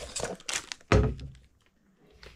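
A rigid black cardboard perfume box being handled and opened: a few short thunks and knocks of its panels, the loudest about a second in.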